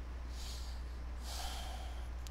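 A man breathing twice close to the microphone, two soft breaths about half a second and a second long, over a low steady hum.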